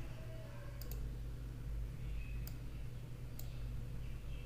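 Computer mouse clicks: a quick double click just under a second in, then two single clicks, over a steady low electrical hum.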